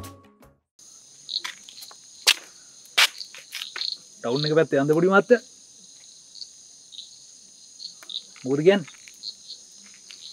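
Night-time chorus of crickets, a steady high chirring that comes in about a second in and carries on, with a few sharp clicks in the first few seconds.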